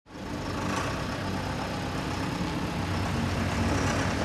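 Steady engine noise from vehicles and heavy machinery at a street construction site: a low engine hum under a broad, even rumble.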